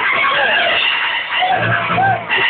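Electronic club dance music of the bumping and progressive styles playing loud over a club sound system, recorded muffled and distorted. Squealing pitch glides run over it, and a deep bass note comes in about a second and a half in.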